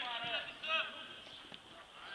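Voices calling out, faint and distant, in two short shouts within the first second, then quieter.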